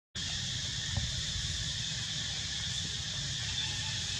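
Steady high-pitched insect chorus, with a low rumble underneath.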